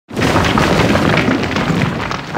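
Logo-reveal boom sound effect that breaks in suddenly out of silence and runs on as a loud, dense rumble full of small crackles, like concrete crumbling apart.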